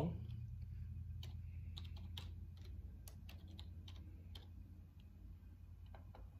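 Computer keyboard keys tapped in an irregular run of light clicks as a login password is typed, thinning out in the last second or so, over a steady low hum.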